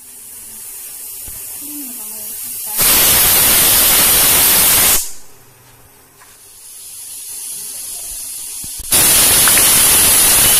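Pressure cooker whistling: steam hisses at the weight valve and builds for a few seconds, then blasts out loudly for about two seconds. The hiss builds again and a second loud blast starts near the end. The whistles are the cooker reaching full pressure and venting.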